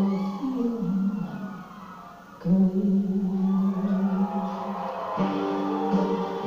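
A masked singer's voice holding long notes over a slow musical backing. It dips quieter about a second and a half in, then comes back strongly on a long held note about two and a half seconds in, with a new note near the end.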